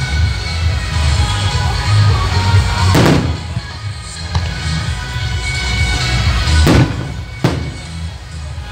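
Music with a deep bass plays continuously while firework shells burst: three sharp bangs, about three seconds in, near seven seconds, and again just after.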